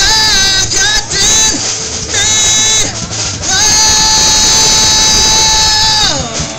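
Blues harmonica played through a vocal microphone over a rock band: a few short bent phrases, then one long held note for the last two and a half seconds or so, with drums and guitar underneath.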